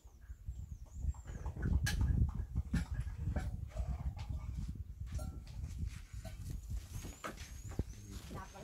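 Animal calls, including a series of short high chirps near the start and again near the end, over a low rumble and scattered knocks.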